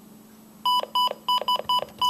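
Midland WR300 weather alert radio beeping as its buttons are pressed to scroll through the list of selectable alert types: about six short, high beeps in quick succession, starting a little over half a second in.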